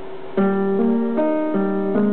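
Upright piano being played, the piece starting about half a second in with a gentle line of notes, a new one roughly every 0.4 seconds over lower held notes. A faint steady hum is heard before the first note.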